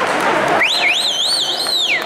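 A high warbling tone rises and falls about three times, starting about half a second in and gliding down as it ends a little over a second later. It sounds over the general hall noise.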